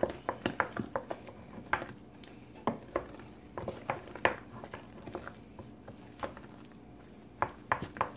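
A spoon stirring thick mashed potatoes in a stainless steel pot, knocking and clicking irregularly against the pot's side. The knocks come several a second at first and grow sparser later.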